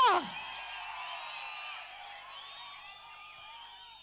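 A large outdoor crowd cheering, with many overlapping whoops and yells, slowly fading. A woman's shout through the loudspeakers falls away right at the start.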